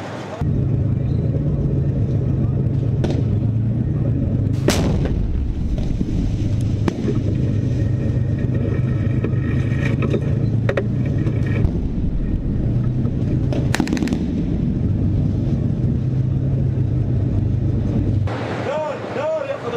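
A tank's engine running with a steady low drone, with several sharp cracks of gunfire over it, the strongest about five seconds in and a quick pair near the end.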